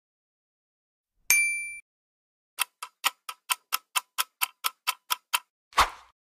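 Quiz-game sound effects: a short bright ding about a second in, then a countdown clock ticking about four to five times a second for nearly three seconds, ending in a brief swish.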